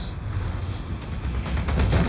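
Deep low rumbling booms, with a short hiss at the start and a cluster of sharp hits near the end.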